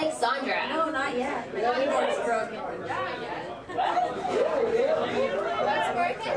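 People chatting between songs, voices overlapping in casual conversation.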